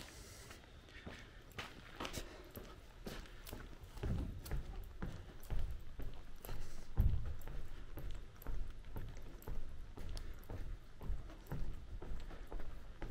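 Footsteps walking at a steady pace over the wooden plank deck of a covered bridge, hollow thumps about two a second, growing louder from about four seconds in.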